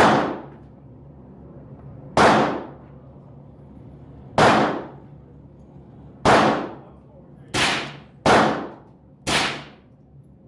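Ruger 10/22 .22 LR semi-automatic rifle firing seven single shots, each a sharp crack with a short ringing tail. The first shots come about two seconds apart, and the last four come faster, about a second apart, in the second half.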